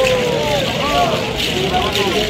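Voices chanting and calling in short, gliding phrases over a steady hiss, at a traditional Kougang masked dance.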